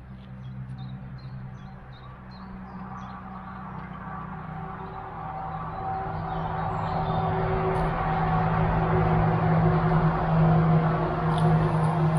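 A motor vehicle's engine hum, steady in pitch, growing gradually louder over several seconds as it draws near.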